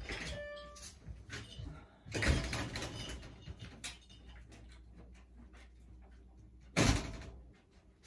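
A door being opened about two seconds in and shut sharply near the end, with a brief high squeak just before the opening.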